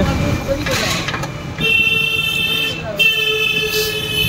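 Vehicle horn honking in two long, steady, high-pitched blasts, the first starting about a second and a half in and the second right after it, over road and traffic noise.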